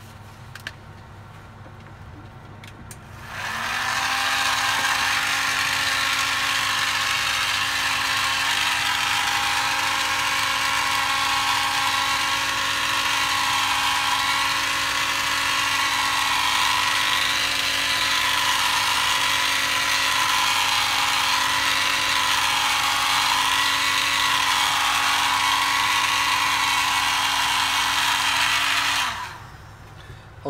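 Electric hot air gun switched on about three seconds in, its fan motor spinning up to a steady whirr with a loud rush of air, and switched off shortly before the end. The air note wavers a little while the gun heats boot polish on a fossil so that it soaks in.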